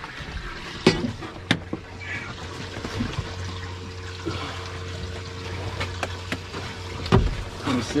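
Sharp knocks and handling sounds as a gag grouper is set down on a plastic measuring board on the fiberglass deck of a boat: two clear knocks about a second in and a thump near the end. Under them runs a steady low hum with water sounds.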